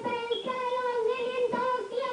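A young boy singing unaccompanied into a microphone, holding long, steady notes with a few short breaks for breath.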